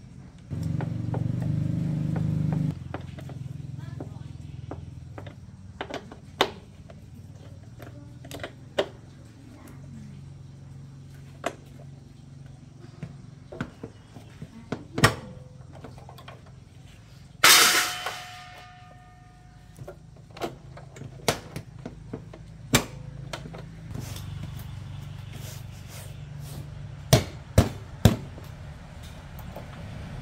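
Scattered clicks and knocks of hand work on a motorbike's seat and plastic body parts, with one louder, longer clatter about halfway through, over a low steady hum that is louder in the first few seconds.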